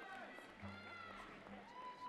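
Faint, distant voices murmuring in a large hall, with a brief low hum about half a second in.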